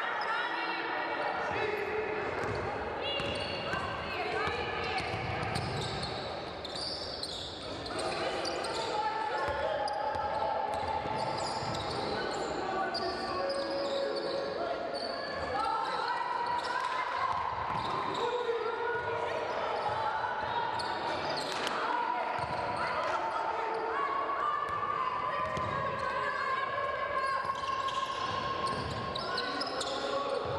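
Live basketball game sounds echoing in a large gym: a basketball bouncing on a hardwood court, with players and coaches calling out throughout.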